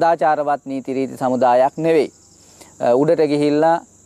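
A man narrating in Sinhala in short phrases, pausing for about a second midway, over a steady high-pitched drone.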